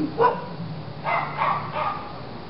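A dog barking: one sharp bark just after the start, then a few shorter barks in quick succession about a second in.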